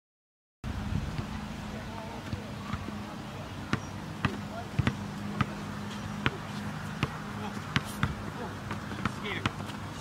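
A basketball being dribbled on a hard outdoor court, sharp single bounces at irregular intervals over a steady low hum. It cuts in abruptly just after the start.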